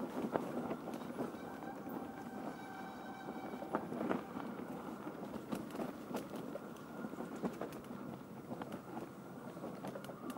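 Mountain bike rolling fast down a forest singletrack covered in dry leaves: a steady rush of tyre noise through leaves and dirt, with frequent clicks and knocks from the bike over bumps.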